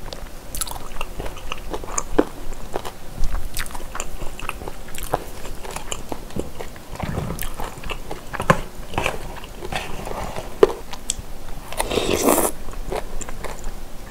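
Close-miked chewing of boneless chicken feet in spicy broth: many small wet clicks and squishes of chewy skin. A short slurp near the end as noodles are sucked in.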